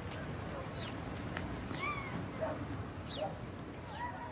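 Outdoor ambience: a steady background rumble with a few short, high calls scattered through it, some sliding downward and one arching call about two seconds in.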